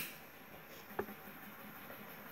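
A click, then a faint steady hiss from a small handheld torch passed over wet acrylic pour paint to pop air bubbles, with a second light click about halfway through.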